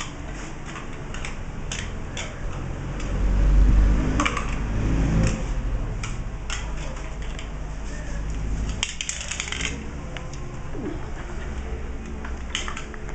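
A plastic cup clattering and skidding on a tile floor as a beagle puppy pushes and bats it about, giving irregular light clicks and knocks, with a quick run of clatters about nine seconds in. A louder low rumble comes around four seconds in.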